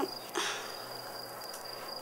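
A cricket trilling steadily at one high pitch in the background, with a short breathy noise about half a second in.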